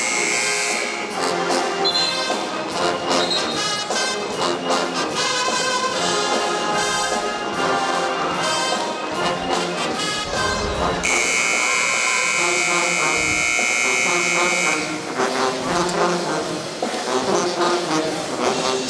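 Pep band brass and drums playing an up-tempo tune over arena crowd noise. About 11 seconds in, a loud, held high tone comes in and lasts about four seconds.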